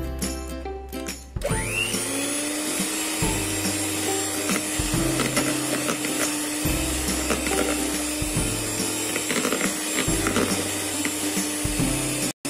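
Electric hand mixer switched on about a second and a half in, its motor whining up to speed and then running steadily as the beaters churn through a thick butter, egg-yolk and cornstarch mixture in a bowl. Background music plays underneath.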